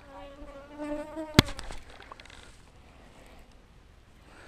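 A fly buzzing close to the microphone for about two seconds, with one sharp click partway through.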